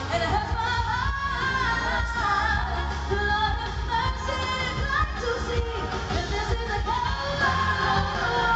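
Live concert music: a woman singing lead over a full band with a steady beat and heavy bass, trumpet and trombone playing alongside, heard in a large hall.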